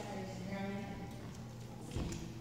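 An indistinct voice, with one drawn-out vocal sound about half a second in, and a short knock near the end.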